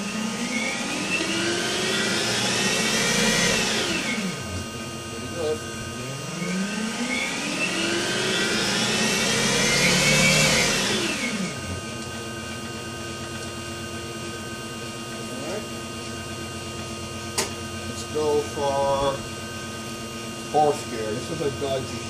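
The electric drive motor and ZF 5HP24 automatic gearbox of a BMW 840Ci EV conversion, driving a raised wheel. It whines up in pitch for about four seconds and winds back down, twice. After that a low steady hum remains, with a sharp click about two-thirds of the way through.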